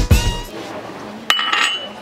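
A drum-driven music track ends with its last drum hits in the first half second. Then, against quiet room sound, a single sharp clink of tableware just past the middle, ringing briefly with one high tone.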